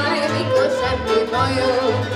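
A woman singing a Hungarian folk song, accompanied by a folk band of fiddles, accordion, cimbalom and double bass, with the bass marking a steady beat about twice a second.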